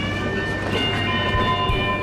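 Double-stacked container freight train passing: a steady low rumble with thumps of wheels over the rail joints, under a chord of steady tones from its horn that stops just after the end.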